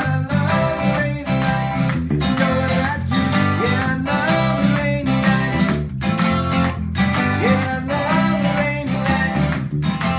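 Live instrumental jam: electric bass, a red semi-hollow electric guitar playing lead lines with bent notes, and a strummed acoustic guitar, over a steady beat.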